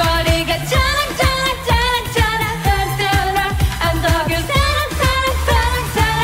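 K-pop girl group's female voices singing a repetitive, chant-like lyric line over an electronic pop backing track with a pulsing bass.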